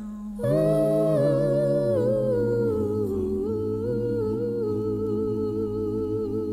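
Wordless vocal humming in a bluegrass gospel recording: slow, held notes that step gently between pitches over a steady low drone, starting about half a second in.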